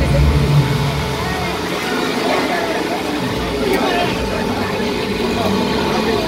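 Several people talking at once over road traffic noise, with a low vehicle rumble that fades about a second in.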